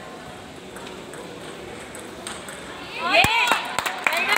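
Table tennis ball ticking faintly off bats and table in a rally in a large hall. About three seconds in, a loud voice call rings out, with a few sharp knocks of the ball.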